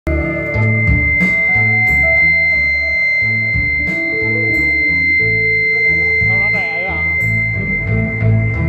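Yamaha electronic keyboard playing a song's introduction through a PA speaker: a stepping bass line over a sparse beat, with a steady high-pitched tone sounding over it. A short wavering melodic line comes in near the end.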